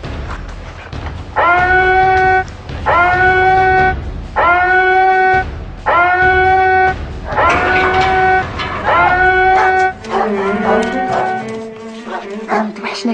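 A loud horn sounds six times, evenly spaced about a second and a half apart. Each blast lasts about a second, scooping up in pitch at the start before holding one steady note, over dramatic film music. Near the end, lower held music notes take over.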